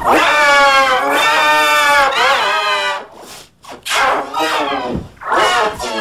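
A child screaming and wailing in a tantrum: one long, loud cry that wavers in pitch for about three seconds, then a short break and two shorter cries.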